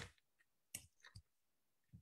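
Near silence broken by a few faint, short clicks: one right at the start, then a couple more around a second in.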